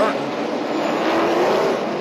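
NASCAR race truck's V8 engine running at speed: a steady drone whose pitch rises slightly and then eases.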